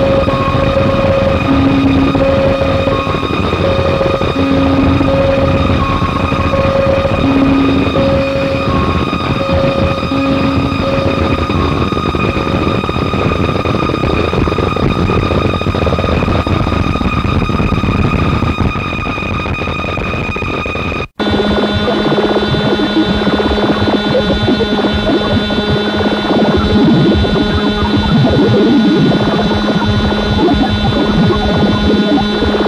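Japanese harsh noise music: a loud, dense wall of electronic noise with steady tones and a stuttering on-off tone through the first dozen seconds. About two-thirds of the way through it cuts out for a split second, and a new noise piece starts with a steady low drone under dense crackle.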